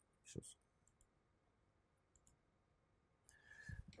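Near silence broken by a few faint computer-mouse clicks, the clearest about half a second in.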